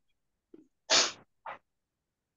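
A person's sharp, noisy burst of breath, loud and short, followed about half a second later by a smaller, fainter puff.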